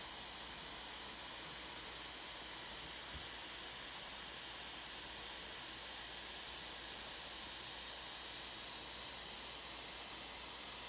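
Steady low hiss of room tone with a thin, constant high whine above it, and one faint tick about three seconds in.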